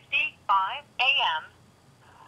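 A voice played through a telephone line in three short phrases, thin and narrow-sounding, falling quiet about halfway through.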